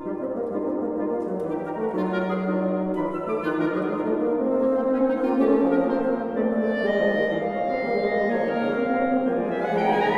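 A woodwind quintet-style quartet of flute, clarinet, French horn and bassoon playing live chamber music in a fast movement, the parts moving in changing notes, with a held low note about two seconds in.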